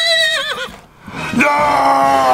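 A man imitating a horse's whinny: a high call that rises, holds, then wavers down, ending under a second in. About a second and a half in, another man shouts a long, drawn-out "no".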